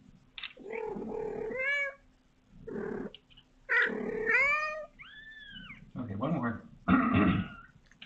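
Newborn kitten mewing repeatedly: about six to seven high, pitched cries with short gaps, some rising and falling in an arch, the last few louder and harsher.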